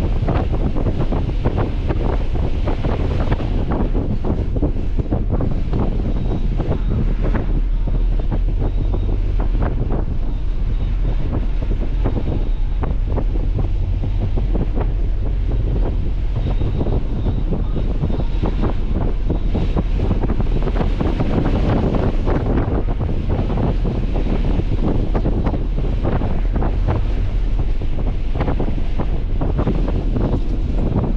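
Wind buffeting the microphone of a moving Nissan 300ZX, over a steady low rumble of road and engine noise.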